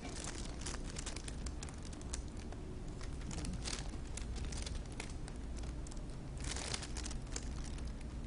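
Low rustling and crackling handling noise, scattered short crackles, with a louder rustle about halfway through and another a little before the end.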